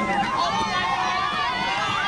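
Many high voices of a group shouting and calling at once, overlapping and continuous.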